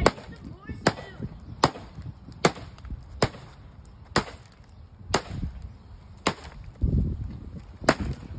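Steel baseball bat hitting the cracked screen of a flat-panel Sony TV over and over, about nine sharp hits at roughly one a second.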